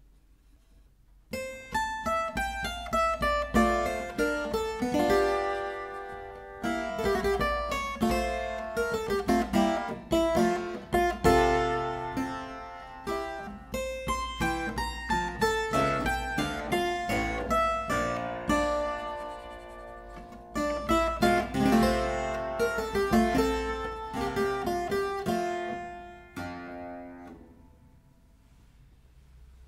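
Clavichord playing a full passage of a keyboard piece, with Bebung, a vibrato made by rocking the pressure on the key, on some of the held notes. The playing starts about a second in and ends on a fading note near the end.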